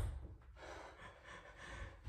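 Faint breathing by a person, a few soft breaths.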